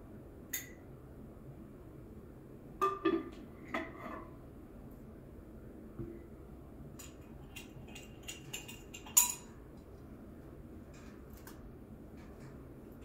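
Scattered clinks and knocks of a teaspoon, cup and metal sugar tin being handled while sugar is spooned in. There is a cluster about three seconds in and a knock around six seconds, then a run of light clicks ending in one sharp clink a little after nine seconds.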